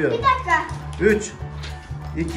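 Children's voices in short bits of talk over background music with a steady low bass line.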